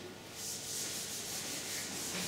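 Marker pen writing on a whiteboard: a steady dry rubbing that starts about half a second in.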